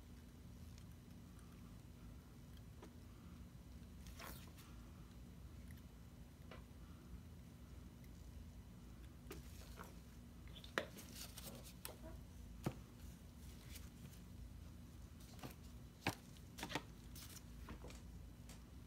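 Faint handling of plastic squeeze bottles of acrylic paint while paint is squeezed onto a canvas: soft squishes and a few sharp plastic clicks and knocks, most of them in the second half, over a steady low hum.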